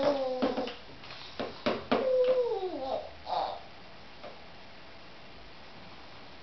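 Baby vocalizing: two drawn-out, squealy calls in the first three seconds, the second sliding down in pitch, with a few sharp knocks among them.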